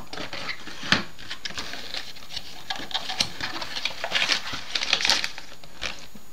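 Cardboard box and its inner cardboard tray being handled and opened by hand: light scraping, rubbing and small taps. A sharper tap comes about a second in, and the handling grows busier around four to five seconds in.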